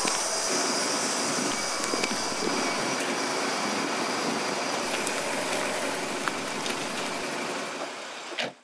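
Steady outdoor street ambience: an even, traffic-like noise with little low rumble, and a couple of faint clicks. It eases off slightly near the end.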